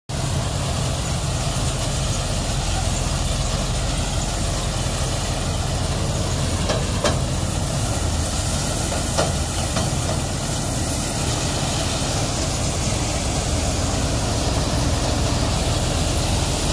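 Punni multi-crop harvester working as a thresher, its engine and threshing drum running steadily as bundles of sesame stalks are fed in. Two short knocks come about seven and nine seconds in.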